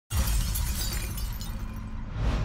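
Sound-effect crash of shattering glass with a deep low rumble: it starts abruptly just after the start and fades away.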